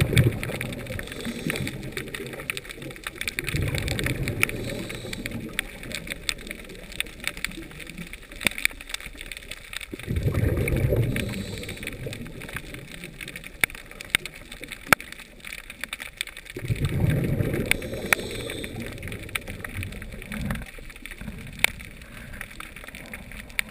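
Underwater sound through a camera housing: a steady scatter of sharp clicks and crackles, with a low rushing swell about every six seconds.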